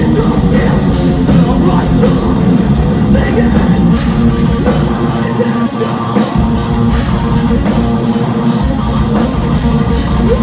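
A metalcore band playing live, heard from the audience: distorted electric guitars, drum kit and vocals, loud and dense without a break.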